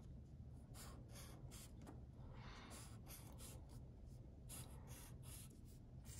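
Faint strokes of a felt-tip marker drawing on paper: a run of short strokes, with two longer drawn lines in the middle and near the end.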